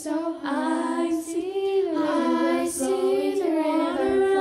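Children's voices singing a cappella in harmony, several parts holding long notes and moving together, with short breaks between phrases.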